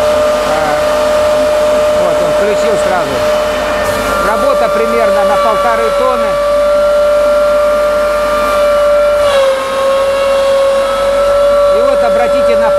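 Rotary hay cutter with an 11 kW motor running at full speed: a loud, steady high whine from the spinning knife rotor, its pitch dipping slightly about nine seconds in. The whine is normal for this machine, from the rotor turning at 3000 rpm and the aerodynamics of its knives, not a fault.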